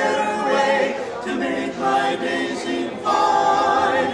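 Barbershop quartet singing a cappella in close harmony, moving through a series of sustained chords that change about once a second, louder near the end.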